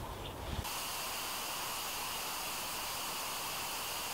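Steady, even hiss with no distinct events, after a brief low rumble in the first half-second.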